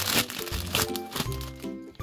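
Foil toy packet crinkling as it is handled and its contents pulled out, over background music with a steady bass line.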